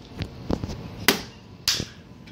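Several sharp plastic clicks and knocks as toy kitchen and cash register pieces are handled, the loudest about a second in and two more close together near the end.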